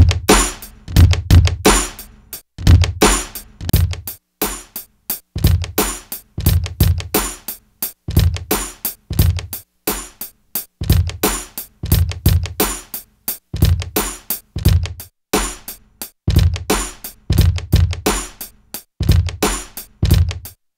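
Boom bap drum machine pattern of kick, snare and hi-hat at 88 beats per minute, played back by hardware sampler sequencers, quantized with no swing. The same bar repeats about every three seconds.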